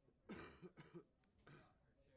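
A single faint cough from a person, about a quarter of a second in, then near-silent room tone with a soft click about a second later.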